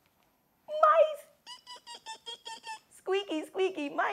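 A woman imitating mice with her voice: a short exclamation, then a quick run of about eight high, even squeaks, followed by more squeaky, pitch-bending voice sounds near the end.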